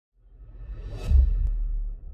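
Logo-sting sound effect: a whoosh that swells to a peak about a second in, over a deep low rumble that holds and then begins to fade.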